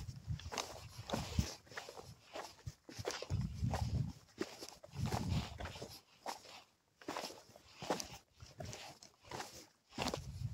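A hiker's footsteps crunching on a rocky, gravelly mountain trail in an irregular walking rhythm, with a few short low rumbling bursts in between.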